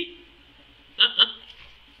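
A brief laugh: two quick breathy bursts about a second in, with quiet in between and after.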